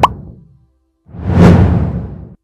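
Motion-graphics sound effects: a quick rising pop at the start, then after a short gap a whoosh that swells and fades about a second in.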